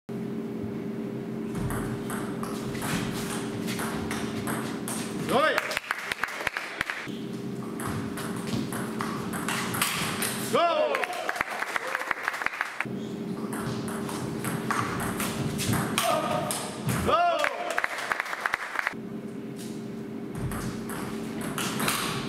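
Table tennis rallies: quick sharp clicks of the ball off bats and table in runs of a few seconds, over a steady hum. A rally ends about every five seconds with a short voice-like call or shout, three times in all.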